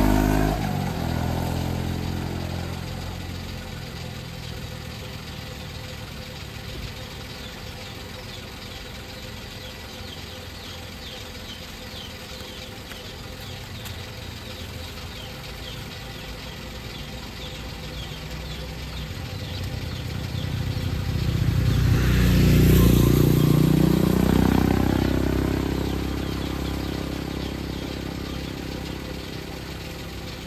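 Road vehicles passing: one fades away over the first few seconds, then after a stretch of steady low hum another approaches and goes by about 22 to 24 seconds in, its engine pitch rising then falling as it passes.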